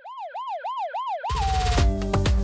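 A siren yelping, its pitch swooping up and down about four times a second, then sliding slowly down as it fades. Just past halfway, electronic music with a heavy beat starts.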